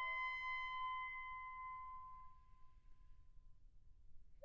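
A single high instrumental note, steady in pitch without vibrato, fading away over about three and a half seconds.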